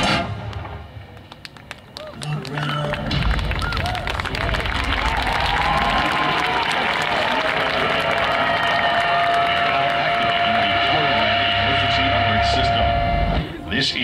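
The marching band's sustained chord cuts off right at the start and rings away. After a short quiet, a dense wash of many voices builds over a low drone, with a single high note held through the second half. It all stops together abruptly just before the end.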